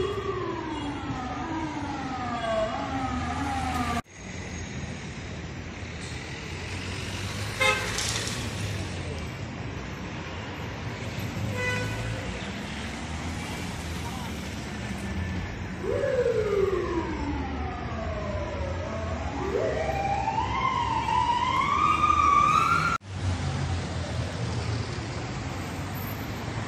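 An emergency vehicle's siren wailing in slow up-and-down sweeps over steady street traffic. It is heard in the first few seconds and again from about 16 seconds in, climbing higher and louder until it cuts off suddenly near the end.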